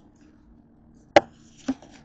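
Two sharp knocks about half a second apart, the first louder: handling noise as the camera and objects are moved about on a desk.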